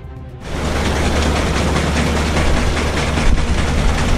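Steady machine noise from a tracked Bobcat compact loader working a sand cleaner attachment, with a strong low rumble, starting suddenly about half a second in; music plays underneath.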